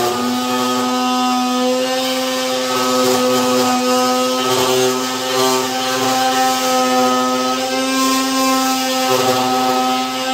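Handheld electric heat gun running steadily, a loud, even motor-and-fan drone at one unchanging pitch. It is warming the fiberglass side skirt so it can be molded to the car's body.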